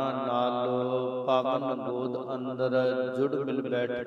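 A man chanting a devotional invocation in long, drawn-out notes that slide slowly in pitch.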